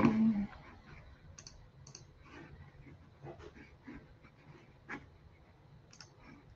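Scattered faint clicks and taps of a computer keyboard and mouse, after a short louder sound at the very start.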